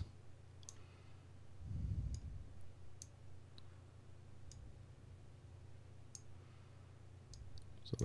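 Computer mouse clicking faintly and irregularly, about ten clicks spread over the seconds as a value in the software is adjusted, over a steady low hum.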